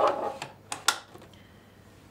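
Two sharp clicks a little under a second apart-ish, close together, as a sewing machine's extension table is fitted back on and snaps into place.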